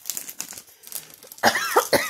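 Small clear plastic bag crinkling and rustling as it is handled, followed about one and a half seconds in by a short, loud vocal exclamation from a woman.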